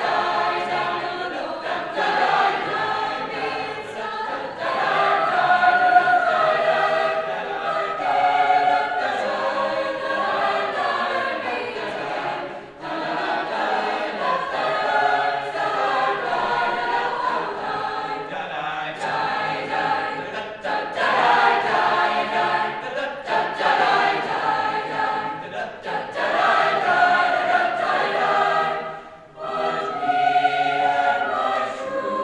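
A mixed high school choir singing in parts, in long phrases with brief breaks about a third of the way through and again near the end.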